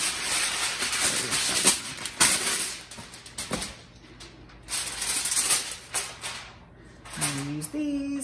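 Heavy-duty aluminum foil being pulled off the roll and handled, crinkling and rattling in two spells: a long first one with a few sharp crackles, then a shorter one about five seconds in.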